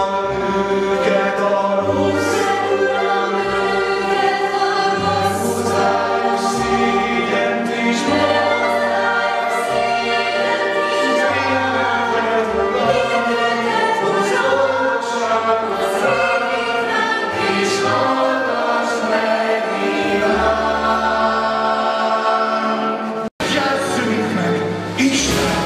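A stage musical's cast singing together as a choir in harmony, with instrumental accompaniment and a bass line moving under the voices. The sound cuts out for an instant near the end.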